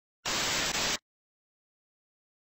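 Burst of TV-static noise, a glitch sound effect lasting under a second, with a brief stutter in the middle; it cuts off suddenly into digital silence.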